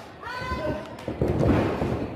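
Several heavy thuds of wrestlers' bodies hitting the ring mat, bunched together in the second half and loudest about a second and a half in.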